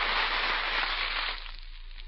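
Steady hiss and crackle of an old radio recording's surface noise, dropping to a fainter level about one and a half seconds in.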